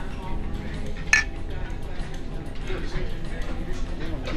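A single sharp clink about a second in, ceramic or glass ware knocking together as items are handled in a metal shopping cart.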